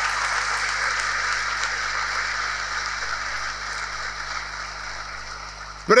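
A large audience applauding, the applause holding steady and then slowly dying away toward the end.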